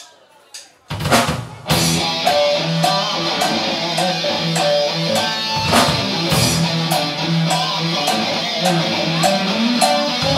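Live rock band starting a song: after a couple of sharp clicks, drum kit, electric guitar and bass guitar come in together about a second in. They play a loud instrumental intro, pounding drums under a repeating guitar riff.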